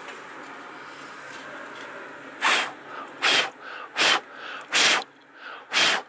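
A person blowing hard on a dusty circuit board to clear the dust: five short, forceful puffs of breath about a second apart, starting a couple of seconds in.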